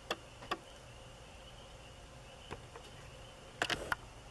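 A few sharp clicks, with a quick run of them near the end, over a faint steady high-pitched whine.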